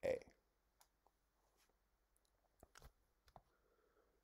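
Near silence broken by a few faint, short clicks, in pairs about two and a half seconds in and again about a second later.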